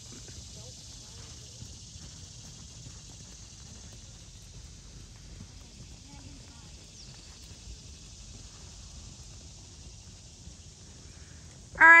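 Faint, soft hoofbeats of a horse moving around a sand riding arena, over a steady high-pitched hiss.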